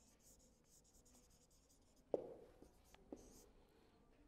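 Near silence with the faint squeak and scratch of a marker writing on a whiteboard, and a short knock about two seconds in and a lighter one about a second later.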